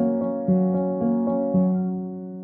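Upright piano playing slow, sparse notes, struck about every half second, with the last one about one and a half seconds in left ringing and fading.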